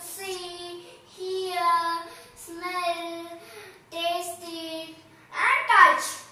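A young child singing unaccompanied in short phrases of long, level held notes, with brief breaks between them, and a louder phrase near the end.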